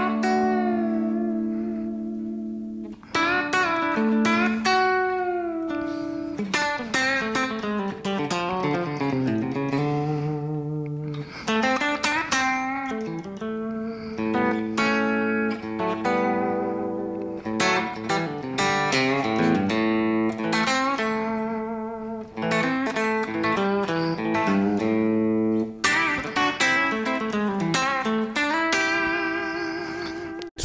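Telecaster-style electric guitar played through a Kemper profiler: a lead line of sustained notes, chord stabs and string bends, the held notes shaken with a medium-slow vibrato.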